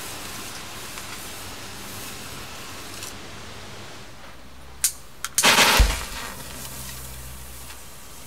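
Cotton wool soaked in liquid oxygen burning with a faint steady hiss; about five seconds in, two sharp clicks and then a loud whoosh with a thump as a second oxygen-soaked sample is lit and flares up.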